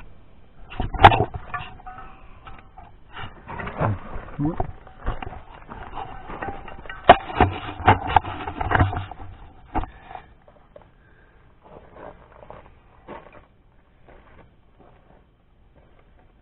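Handling noise: a busy run of knocks, clicks and rustling from about a second in to about ten seconds, with the sharpest knocks near the start and in the middle, then only a few faint clicks.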